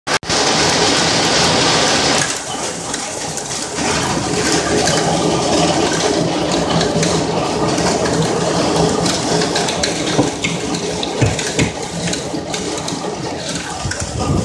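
Hail falling thick and fast in a hailstorm: a dense, steady hiss and clatter of stones striking, loudest in the first two seconds, with scattered sharper hits later on.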